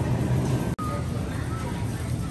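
Supermarket background ambience: a steady low hum with faint background voices, broken by a sudden short dropout about three quarters of a second in, followed by a brief faint beep.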